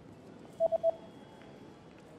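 Three quick electronic beeps at one pitch, a little over half a second in, over faint steady background noise.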